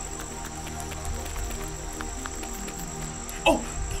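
Soft background music over a steady cricket-like high chirr from the soundtrack's nature ambience. A voice begins to speak near the end.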